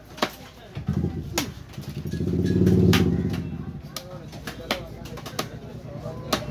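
A motor vehicle's engine passing close by, swelling to its loudest about three seconds in and then fading, with scattered sharp knocks of fish pieces being handled on a wooden chopping block.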